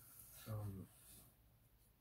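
A man's short wordless murmur about half a second in, with very quiet room tone around it.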